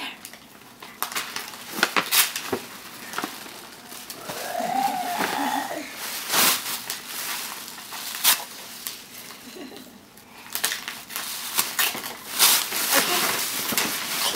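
Tissue paper crinkling and rustling in short bursts as it is pulled and crumpled out of a paper gift bag.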